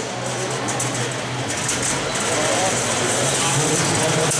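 Crowd voices and shouts around a combat-robot arena over a steady motor hum from beetleweight combat robots fighting; a high hiss swells about halfway through.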